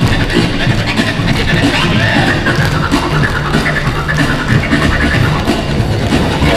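Recorded music playing, with the quick clicks of a group of dancers' tap shoes striking the stage floor.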